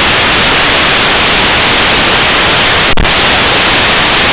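Loud, steady static hiss in place of the match sound, with a faint click about three seconds in. It is the sign of a recording fault, as the picture breaks up at the same time.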